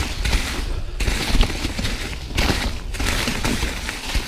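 2019 Santa Cruz Hightower LT mountain bike pedalled hard over a rough, leaf-covered trail: a dense, rapid clatter of knocks and rattles from tyres, chain and frame over a steady low rumble.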